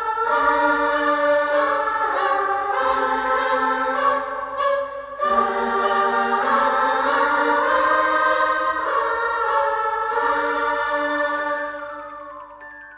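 Music: layered, choir-like voices holding sustained chords that change every second or two, with a brief dip about four seconds in. The music begins to fade near the end.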